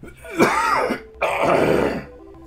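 A man clearing his throat hard with two harsh coughs into his elbow: the first is short, the second longer. His throat is irritated by pollen and by cannabis oil dabs.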